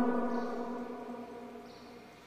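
The ringing tail of a man's amplified voice through a church sound system, a steady hum of held tones that fades away over about two seconds as he pauses.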